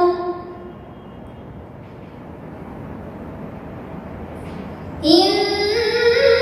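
A girl's solo Qur'an recitation (tilawah) in a melodic chant style. A held note ends just after the start, then comes a pause of about four and a half seconds with only low background hiss. About five seconds in, the next verse begins on a long sustained note that steps up in pitch.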